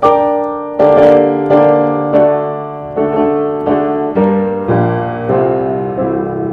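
1925 Blüthner upright piano, about 130 cm tall, played in slow chords, a new chord struck roughly every two-thirds of a second and left to ring and fade. Its tone is one the player calls plummy.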